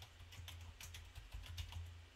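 Typing on a computer keyboard: a quick run of key clicks, over a low steady hum.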